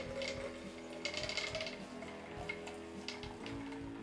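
Water pouring from a plastic jug into a glass flask in short splashy pours, strongest about a second in, under soft background music with sustained chords.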